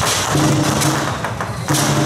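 Lion dance percussion: steady drum beats with clashing cymbals and a low ringing tone, and a loud cymbal crash near the end.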